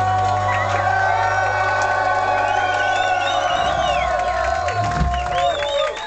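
A reggae band's closing chord ringing out, with the held bass note dying away about five seconds in, while the crowd cheers and whoops over it.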